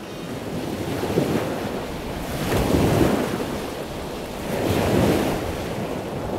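Sea waves washing, with wind rushing on the microphone; the wash swells louder twice, about halfway through and again near the end.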